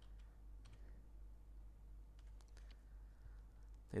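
Faint, scattered clicks of computer keyboard keys being typed, over a steady low hum.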